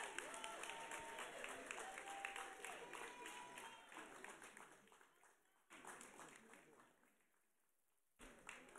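Congregation applauding, with voices calling out over the clapping; the applause thins out over the second half and dies away to near silence.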